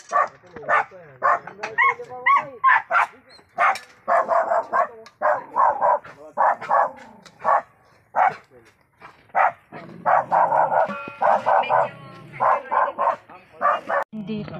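A dog barking over and over in quick runs of short barks, with a brief lull about eight seconds in.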